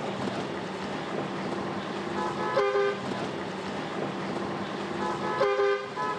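Steady engine and road noise heard from inside a moving bus, with a vehicle horn honking twice, short toots about two and a half and five and a half seconds in.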